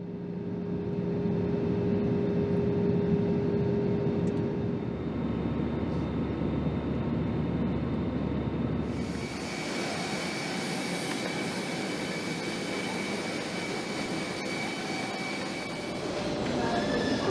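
Steady drone of a jet airliner heard from inside the cabin in flight, with a low steady hum. About nine seconds in it changes abruptly to airport apron noise: a steady rush with high, steady whines of jet machinery.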